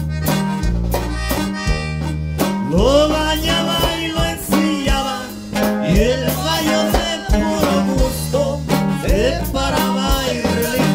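Norteño band music played live: an accordion melody over bajo sexto chords and a bass line.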